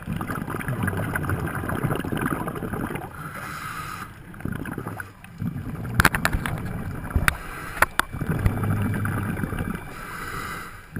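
Muffled underwater noise of scuba divers breathing through regulators, with bubbling surges as they exhale. A few sharp clicks come between about six and eight seconds in.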